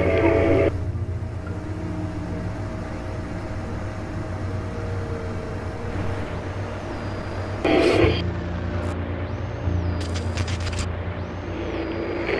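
Dark ambient drone: a steady low rumble with a few held tones above it, broken by a brief louder burst about eight seconds in and a handful of sharp clicks just after.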